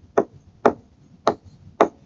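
Stylus tapping on a tablet screen while handwriting: four short, sharp taps about half a second apart.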